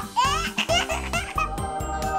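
A baby giggling: a quick string of squealing laughs in about the first second, over background music that settles into a held chord.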